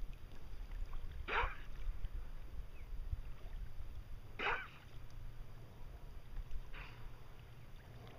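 Sea kayak on calm water: a steady low rumble of wind on the microphone, with three brief soft swishes a couple of seconds apart, typical of paddle strokes.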